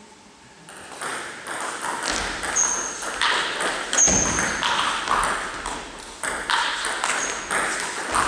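Table tennis rally: the celluloid ball clicking off rubber-faced bats and the table in quick succession, roughly two hits a second, each hit echoing in a large sports hall. It starts under a second in, with a few short high squeaks among the hits.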